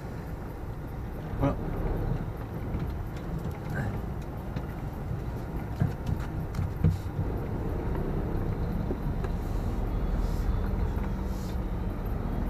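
Scania lorry's diesel engine running steadily at low speed, heard from inside the cab as the truck creeps along, with a couple of sharp clicks in the middle.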